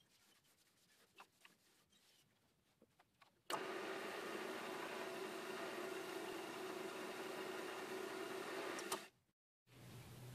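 Near silence with a few faint clicks, then a wood lathe's motor running at about 750 rpm, a steady hum with a whine, which cuts in abruptly about three and a half seconds in and stops abruptly about a second before the end.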